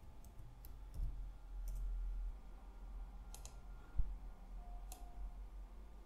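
Faint, scattered clicks of a computer keyboard and mouse as text is typed and edited, a handful of separate clicks rather than steady typing, with a soft low thump about four seconds in.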